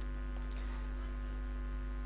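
Steady electrical mains hum with a stack of steady overtones, picked up by the recording chain, with a faint click about half a second in.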